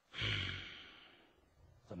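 A man's breathy sigh, a single exhale that begins a moment in and fades away over about a second.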